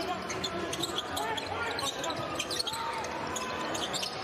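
A basketball dribbled on a hardwood court in an arena, over a steady murmur of crowd voices with scattered sharp knocks and brief shouts.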